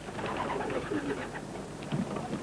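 Racing pigeons cooing softly, with a low, wavering call over a steady hiss.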